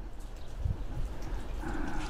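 Border collies eating wet food from stainless-steel bowls: irregular small wet chewing and licking clicks.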